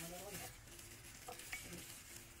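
Faint wet squelching and smacking as a hand in a plastic glove squeezes and turns raw chicken pieces in a thick, sticky marinade, in short irregular bursts.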